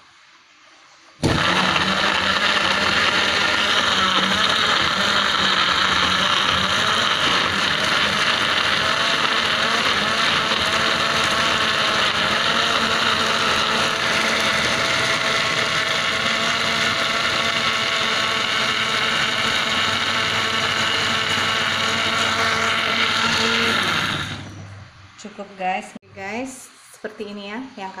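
Electric kitchen blender running at a steady pitch, coarsely grinding shallots, garlic, curly red chillies and tomato with water into a chilli paste. It starts suddenly about a second in and stops a few seconds before the end.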